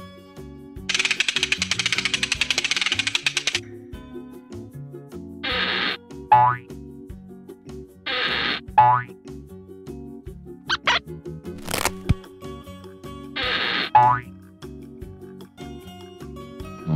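Cartoon sound effects over light background music: a fast rattling run about a second in, then three whooshes, each ending in a quick springy boing, with a couple of short zips and a click in between.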